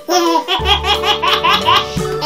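A child's laugh, a quick run of high 'ha-ha' pulses at about five a second, over children's background music with sustained notes and a bass line.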